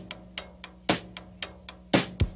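Drum kit playing alone at the start of a 1974 soul record: a steady beat of about two strong hits a second, with lighter strokes between them.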